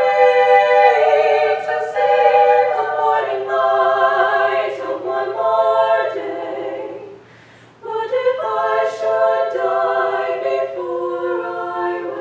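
Small treble choir singing unaccompanied, moving slowly through sustained chords; about seven seconds in the voices stop together for a breath and then come back in on a new chord.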